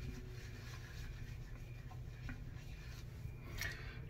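Faint rubbing of fingertips working shaving lather into a bearded face, over a low steady hum, with a few faint crackles a little before the end.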